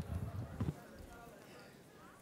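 Headset microphone being handled and adjusted against the cheek, giving a few dull low bumps and rubs in the first second, then faint room tone.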